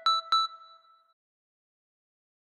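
Two short, bright, bell-like synth pluck notes from a programmed electronic beat playing back. They ring and fade out within about a second, then all goes silent as playback stops.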